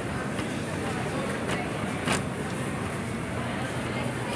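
Supermarket ambience: a steady background hum with faint voices, broken by a few soft clicks, the sharpest about halfway through.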